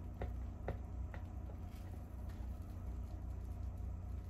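Faint, irregular clicks and taps as a plastic pipette pokes and agitates a foaming, acid-softened egg in a glass beaker of nitric acid, over a steady low hum.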